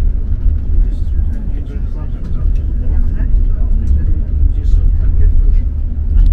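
Tour bus driving along the road, heard from inside the cabin as a steady low rumble of engine and road noise.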